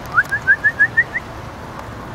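A quick series of about seven short, clear whistled chirps, each sliding upward, the series climbing slightly in pitch over about a second before stopping.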